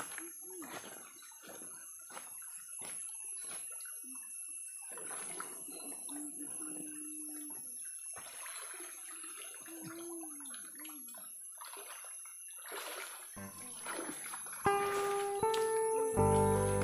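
Shallow stream water splashing and trickling as woven bamboo fish traps are lifted and tipped in it, with faint voices now and then. Music comes in near the end.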